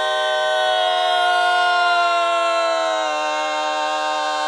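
Women's barbershop quartet singing a cappella in four-part harmony, holding one long sustained chord. About three seconds in, the lowest voice steps down a little while the chord carries on.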